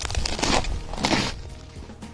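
Footsteps crunching in snow, two steps in the first second or so, over quiet background music.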